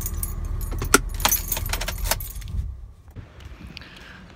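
Car keys jangling and clicking against the steering column as the ignition key is turned and pulled out, over the low rumble of the idling car engine, which cuts out about two-thirds of the way through.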